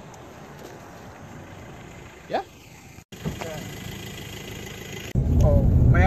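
Pickup truck's engine idling, heard close up from inside the cab once the camera goes in: low and faint at first, then suddenly much louder about five seconds in.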